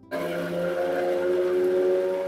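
Electric mixer-grinder grinding fresh corn kernels in its steel jar: the motor starts suddenly and runs with a steady whine.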